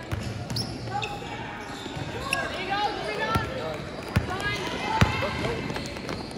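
A basketball bouncing on an indoor court during play, a handful of sharp bounces spread through, the sharpest about five seconds in, with indistinct shouting from players and spectators.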